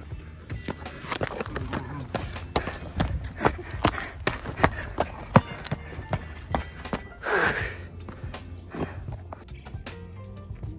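Footsteps on a rocky granite trail: irregular scuffs and sharp taps of shoes on the rock, with a short rushing noise about seven and a half seconds in. Background music plays underneath.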